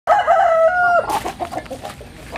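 A rooster crowing: one loud held call lasting about a second, stepping up in pitch partway through and then breaking off. Softer short calls from the chickens follow.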